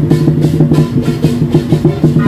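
Lion dance percussion, drum and cymbals beating a rapid rhythm, over the running of motorbike engines in slow traffic.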